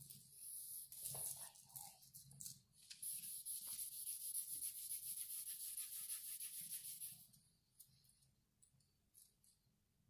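Charcoal scraping across drawing paper in quick, repeated strokes as tone is laid in. It stops about seven seconds in, leaving only faint touches.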